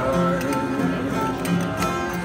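Live acoustic string band playing an instrumental passage between sung lines, with guitar picking and steady held notes.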